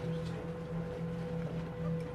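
A steady low hum with a constant, thin higher tone held over it.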